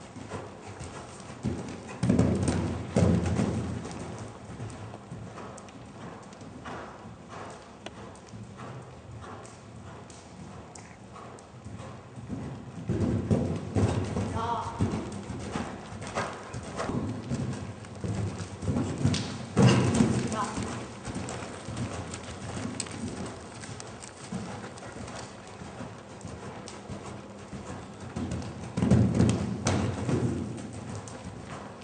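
Hoofbeats of a horse cantering on the soft sand footing of a riding arena, in a steady rhythm that swells louder several times as the horse passes close.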